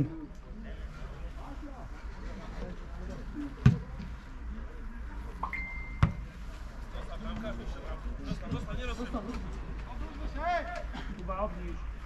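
Two sharp thuds of a football being kicked, about four and six seconds in, with distant shouts from players on the pitch. A brief steady whistle note sounds just before the second thud.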